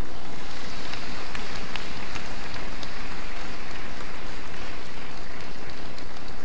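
Steady, even hiss-like noise with a few faint ticks, like rain or a distant crowd, holding at one level throughout.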